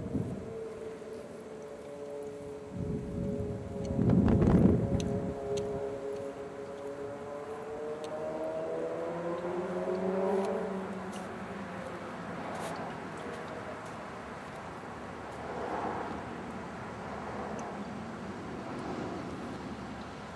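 A motor vehicle passing: an engine hum whose pitch slowly falls over about ten seconds, with a rush of road noise loudest about four seconds in, then fading to a steady low background.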